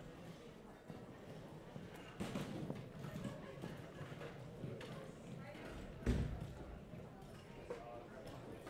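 Background murmur of voices with irregular knocks and clatter of chairs, music stands and footsteps on a stage floor, and one heavy thud about six seconds in.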